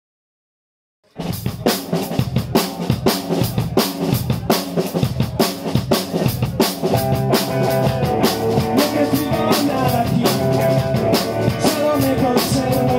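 Live rock band of drum kit and electric guitar starting suddenly about a second in, with a steady driving drum beat of bass drum, snare and cymbals. Sustained electric guitar notes come through more clearly in the second half.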